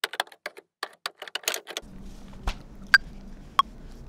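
Computer keyboard clicks for the first couple of seconds, then a soft thump and the Ableton Live metronome's count-in: short pitched ticks about two-thirds of a second apart, the first one higher than the next, as recording starts.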